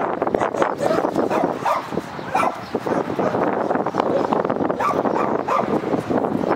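Two dogs play-fighting, vocalising in quick short bursts throughout over a continuous rough scuffle of sound.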